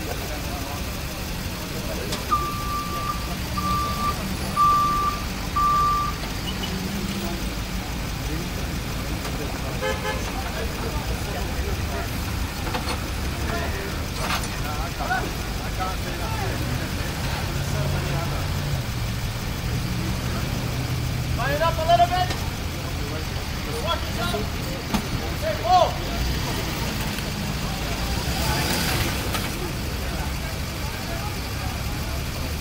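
An engine idling amid street traffic, with four short, evenly spaced beeps at one pitch a few seconds in. People's voices come in briefly later.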